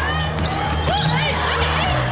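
Basketball being dribbled on a hardwood court during live play, with short high squeaks over a steady low tone.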